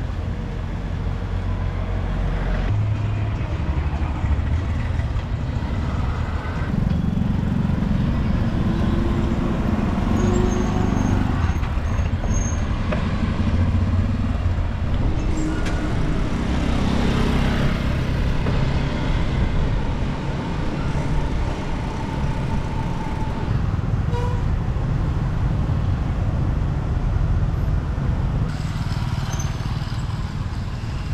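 Street traffic heard from a moving bicycle: a steady low rumble of road and wind noise, with motorbikes and cars passing.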